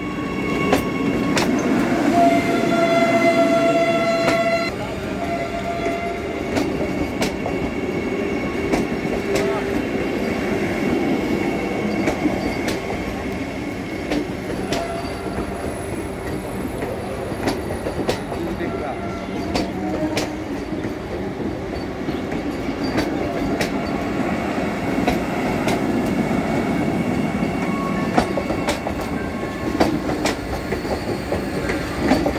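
Vande Bharat Express electric trainset rolling past close by, its wheels clicking over the rail joints. A train horn sounds once, for about two and a half seconds, a couple of seconds in.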